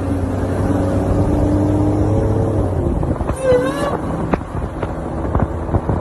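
A Dodge Charger's engine running as the car drives along, a steady engine note for the first few seconds. A voice exclaims briefly about halfway through and again near the end, with a few sharp pops in between.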